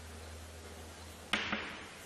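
Chalk on a blackboard over a low steady hum: about a second and a half in, a sharp tap of the chalk striking the board, followed by a smaller tap.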